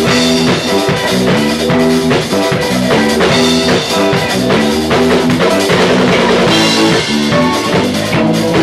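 A band playing together live: drum kit, guitars, bass guitar and keyboard, at a steady loud level with a regular drum beat.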